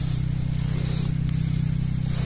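A steady low hum from a running engine or motor, even in pitch throughout, with a faint hiss above it.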